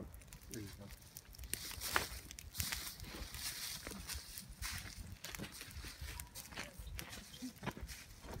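Footsteps crunching irregularly through dry pine-needle litter, with the light crackle of low flames burning in the needles.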